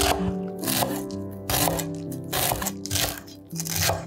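A chef's knife cutting through fresh green herbs on a wooden cutting board: several crisp, crunching cuts, spaced well under a second to about a second apart, over background music.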